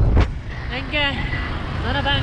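Steady low rumble of wind and engine noise from a motorbike riding along a highway, with a loud knock of a hand on the camera at the start.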